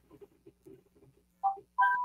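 Two short electronic tones about half a second apart, the second a steady beep-like chime, over a faint low hum.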